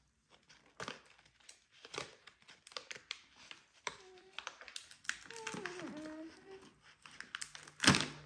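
Plastic dog-treat pouch being crinkled and torn open by hand: scattered crackles and clicks, with a loud sharp crackle near the end. A few brief vocal sounds come in the middle.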